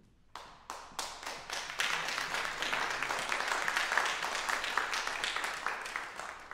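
Audience applauding: a few scattered claps at first, quickly building into steady applause, which begins to thin out near the end.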